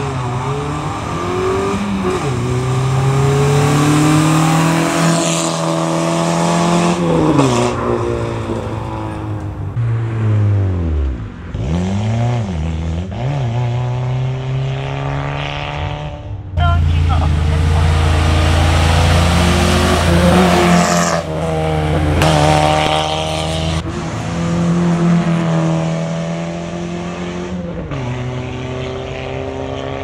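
Citroën Saxo rally car's 1.4-litre four-cylinder engine revving hard under racing acceleration, its pitch climbing and then dropping again at each gear change. About halfway the engine sound jumps abruptly louder and fuller.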